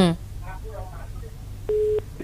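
A voice breaks off just after the start and faint speech follows. Near the end comes a single steady beep of a telephone line tone on the call line.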